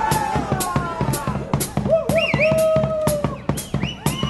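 Street brass band with drums, sousaphone, trumpets and saxophones playing a lively tune. The drums strike about two beats a second under brass lines that slide down in pitch.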